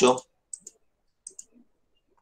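A man's voice breaks off right at the start, then come four short, faint clicks in two pairs about three-quarters of a second apart.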